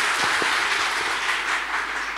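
Audience applauding at a steady level.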